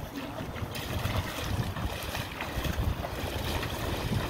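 Footsteps sloshing and splashing through shallow river water, with wind rumbling on the microphone.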